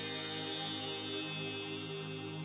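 Intro music: sustained held chords with a high, glittering chime-like shimmer on top, the shimmer thinning out near the end.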